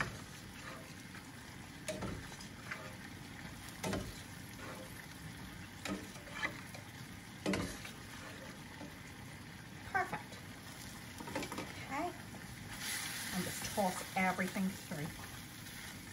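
Wok of chicken, broccoli and oyster sauce sizzling over high heat, with short scrapes and knocks of utensils against the pans every second or two. The sizzle gets much louder and brighter near the end as the wok is stirred.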